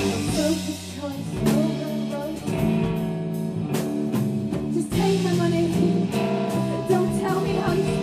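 Live indie rock band playing a passage without words: electric guitar over a drum kit, recorded from the audience on a handheld recorder.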